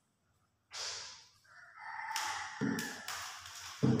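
A rooster crowing once, about a second and a half in, after a brief rustle. Low acoustic-guitar string sounds come in near the end.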